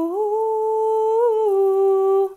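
A woman singing unaccompanied, holding one long wordless note that steps up in pitch at the start and drops slightly about a second and a half in.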